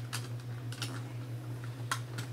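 A few sharp clicks and light handling noises as items are packed into a handbag, over a steady low hum.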